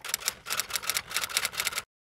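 Typing sound effect: a fast, even run of typewriter-like key clicks, about ten a second, that cuts off suddenly near the end, timed to text being typed onto the screen.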